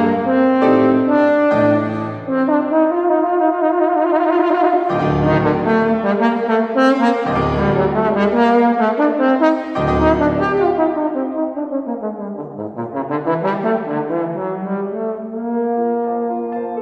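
Bass trombone playing a melody with piano accompaniment, sustained notes dipping into the low register around the middle, with a swooping fall and rise in pitch near the end.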